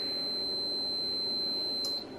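Fluke 77 multimeter's continuity beeper giving one steady high beep that cuts off just before the end: the Sonoff's relay contacts are closed across the meter's probes, then open again.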